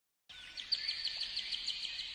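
Birds chirping in quick, evenly repeated high notes, starting about a quarter second in.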